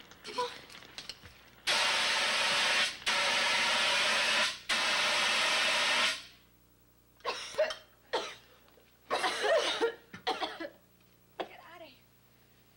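Handheld fire extinguisher discharging onto an oven grease fire: a loud, steady hiss sprayed in three bursts, about four seconds in all. After it stops come several short coughs and throat sounds from people in the smoke.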